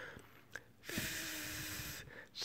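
A person blowing a steady breathy 'th' hiss past the tongue tip against the front teeth for about a second, with a faint thin tone underneath: the first stage of learning a tongue whistle. A small click comes just before it.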